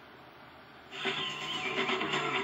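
Satellite TV receiver's audio during a channel change: about a second of faint hiss while the new channel tunes in, then the channel's sound cuts in abruptly.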